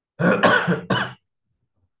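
A man coughing and clearing his throat: two or three harsh bursts within about a second, louder than his speaking voice.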